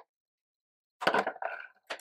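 About a second of silence, then a short burst of clicking and rustling as a clear plastic deli cup is handled.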